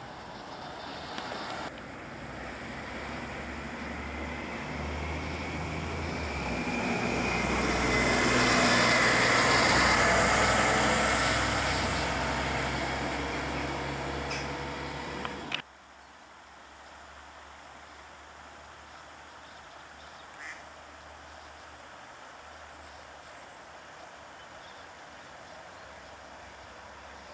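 A road vehicle passing by, its engine and tyre noise building over several seconds, loudest about nine seconds in, then fading away. The sound cuts off abruptly about fifteen seconds in, leaving a quieter steady outdoor background.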